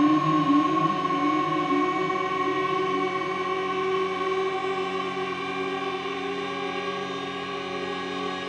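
Ondes Martenot played with its ribbon ring, holding a high sustained tone over a layered drone. The low drone notes waver at first, then settle into a steady chord, and the whole gradually grows quieter.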